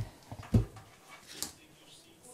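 Close-up thumps and breath noise on a lectern microphone: a short low knock at the start and a louder low thump about half a second in, then only faint noise.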